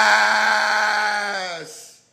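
A man's voice holding one long, drawn-out yell at a steady pitch for nearly two seconds, fading out near the end.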